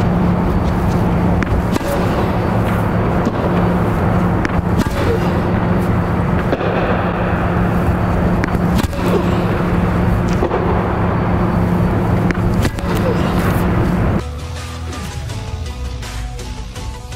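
Tennis racket striking balls on forehand drives, one sharp hit about every two seconds, over a steady low hum. The hum and hits cut off abruptly about two seconds before the end.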